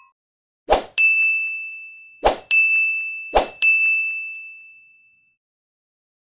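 Animated end-screen sound effects: three times, a quick swoosh followed by a bright ding. Each ding rings out until the next begins, and the last one fades over about a second and a half.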